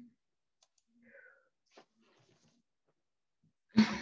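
Mostly quiet, with a few faint clicks and brief murmurs, then two loud, sudden knocks close together near the end.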